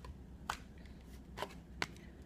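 Tarot cards being handled: a card is drawn off the deck and laid on the table, with three short crisp clicks of card stock, the last and loudest near the end.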